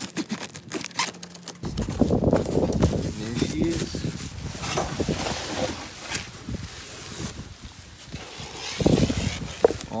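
A long cardboard shipping box being cut open and its flaps pulled back. There are sharp clicks and scrapes of tape and cardboard at first, then from about a second and a half in, dense rustling and handling noise of cardboard and the bubble-wrapped part.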